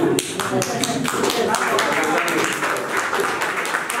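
Scattered hand clapping from a small audience, a run of quick irregular claps, over chatter and voices.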